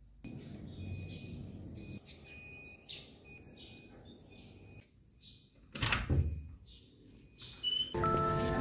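A high electronic beep repeating in many short pulses, over faint background noise. A brief loud thump comes about six seconds in.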